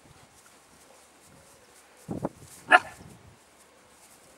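A dog barks twice, about half a second apart, starting about two seconds in; the second bark is the louder.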